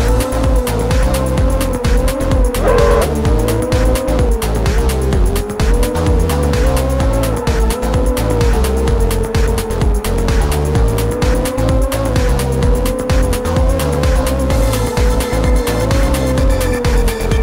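Racing quadcopter's motors and 3045 bullnose props whining, the pitch wavering up and down with the throttle and jumping briefly about three seconds in, over background music with a steady beat.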